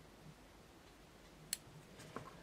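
Near silence: room tone, with one short click about one and a half seconds in.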